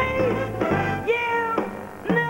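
Female jazz singer holding and bending sliding, wordless notes over a swinging jazz band, the voice gliding up and down in pitch. The band thins out and the sound dips briefly near the end.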